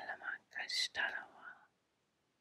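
A woman whispering a few short, breathy syllables over about the first second and a half.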